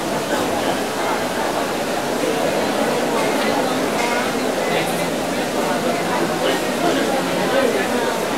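Crowd babble: many people talking at once in the stands, a steady blur of voices echoing in a large indoor pool hall.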